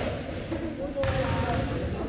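A basketball bounced once on a hardwood gym floor about a second in, typical of a free-throw shooter dribbling at the line, over the chatter of spectators' voices. A thin, steady high-pitched tone runs through most of it.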